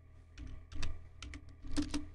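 Computer keyboard keys being typed: several separate keystrokes at an uneven pace.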